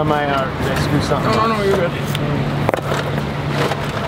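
Mostly speech over a steady low hum, with one sharp knock about two-thirds of the way through.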